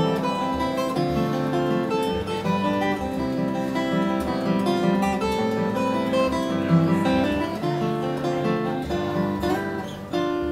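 Solo acoustic guitar played fingerstyle: a continuous run of picked melody notes over a repeated bass note.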